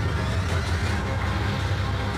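A steady low rumble with a faint rising whoosh over it in the first second.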